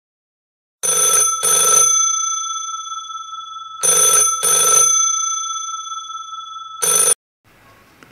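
Telephone bell ringing in a double-ring pattern: two pairs of rings about three seconds apart, each pair's tone lingering and fading. A third ring cuts off suddenly just after it starts, as the call is picked up.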